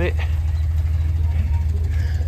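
A steady, loud low rumble runs through the pause in speech.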